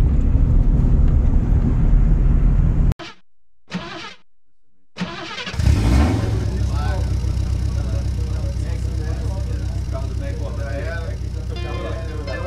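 Turbocharged VW AP 1.9 engine of a Gol idling, heard from inside the car, cut off abruptly about three seconds in. After a short near-quiet gap, a steady low drone comes back about five and a half seconds in with music and singing over it.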